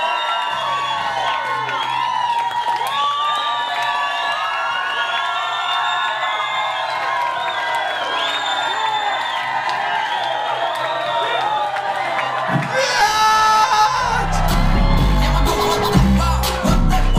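Music with a crowd cheering and whooping over it. About thirteen seconds in, loud dance music with a heavy bass beat kicks in.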